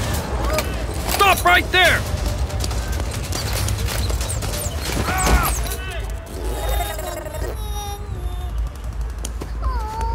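Cartoon battle sound effects: scattered gunshots over a steady low rumble, with shouting voices about a second in and a music bed underneath.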